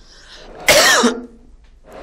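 A man coughs once, sharply, about two-thirds of a second in, after a short intake of breath.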